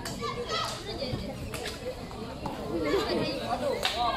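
Young voices of girls' field hockey players and onlookers calling out and chattering, with no clear words. A few sharp clicks come in between.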